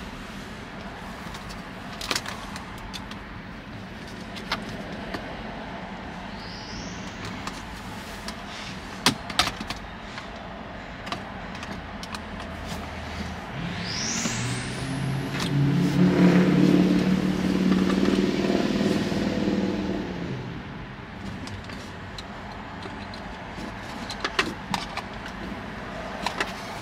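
Plastic center-console trim clicking and scraping as it is worked loose with a small screwdriver, over a steady hum. Midway a vehicle engine swells up and fades away over about six seconds, the loudest sound.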